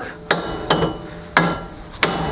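Three hammer blows on metal in quick succession, each ringing briefly.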